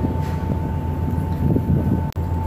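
Steady low drone of a car ferry's engines with a thin steady whine above it, mixed with wind buffeting the microphone on the open deck.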